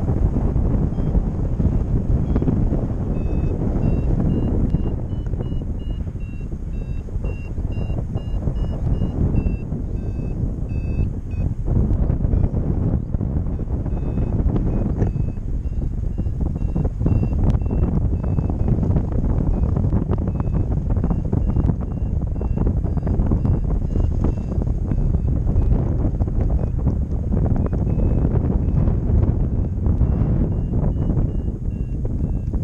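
Wind buffeting the microphone of a camera in paraglider flight, with a variometer's string of short, high beeps over it, the sound it makes in rising air. The beeps pause briefly about midway, then resume.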